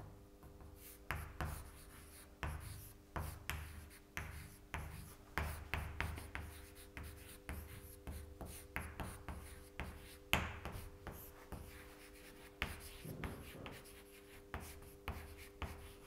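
Chalk writing on a blackboard: a long run of irregular short taps and scratches as the letters are formed, faint.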